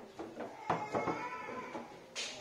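Foosball in play: knocks of the hard ball against the plastic men and the table, the sharpest about two thirds of a second in. A held, slightly wavering tone follows it until near the end.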